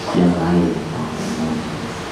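A man's voice through a handheld microphone in a small hall, in short phrases, with a low rumble beneath it in the first part.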